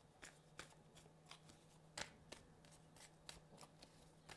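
Tarot cards handled on a tabletop: faint, irregular soft clicks and slides of card against card and table, the sharpest about two seconds in.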